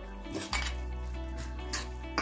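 Steel spoon scraping and clinking against a stainless steel bowl while tossing baby corn pieces in a dry flour coating, with two sharper clinks, about half a second in and near the end.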